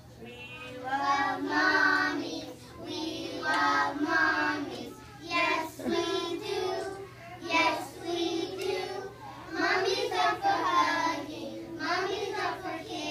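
A group of young children singing a song together, in phrases of held notes with short breaks between them.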